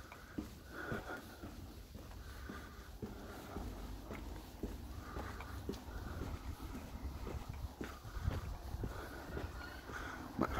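Footsteps of a person walking down a paved ramp, a soft step every half second or so, with his breathing close to the phone's microphone.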